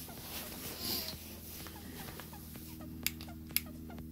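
Faint steady hum with many small short chirps repeating throughout. Near the end come two sharp clicks about half a second apart as a handheld infrared thermometer is brought up.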